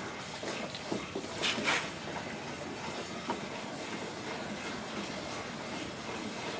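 Fresh water being poured into the fill hole of a 55-gallon plastic drum, a steady pouring and filling sound, with a brief louder moment about a second and a half in.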